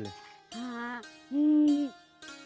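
Background film score: plucked-string notes, with two held, hooting pitched tones, the second one louder and steadier.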